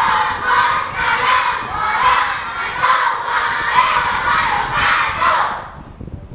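A large crowd of schoolchildren shouting together, loud and sustained, in reply to the speaker's called-out salam greeting; the shout dies away just before the end.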